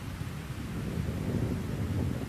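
Storm ambience from an anime soundtrack: steady rain and wind, a rushing noise that grows a little louder.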